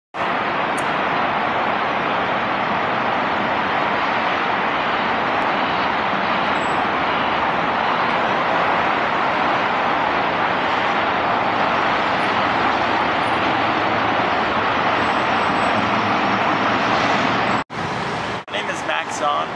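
Steady, unbroken roar of city street traffic. It cuts off abruptly near the end.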